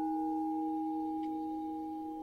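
A singing bowl ringing on after a strike, its clear layered tone slowly fading away.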